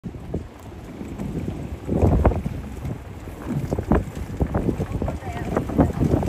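Wind buffeting the microphone in uneven gusts while riding in an open buggy along a wooden jetty, with a couple of knocks from the ride.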